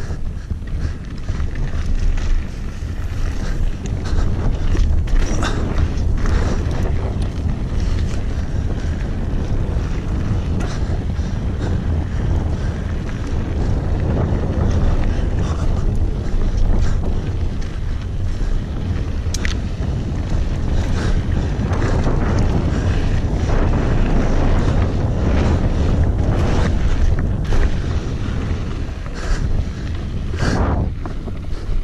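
Wind buffeting a bike-mounted or helmet camera's microphone during a fast mountain-bike descent, over the rumble of knobby tyres on a dry dirt trail. Scattered clicks and knocks run through it as the bike rattles over rocks and bumps.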